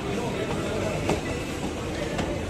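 Steady, noisy indoor background of a busy shop with faint voices, and a single short knock about a second in.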